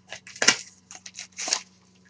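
Trading cards and plastic card holders being handled on a table: several short rustles and clicks, the loudest about half a second in.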